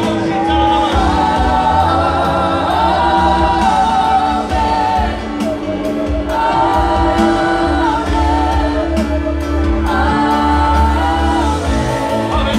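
Group singing of a gospel worship song over instrumental backing, in phrases with long held notes over a steady bass line.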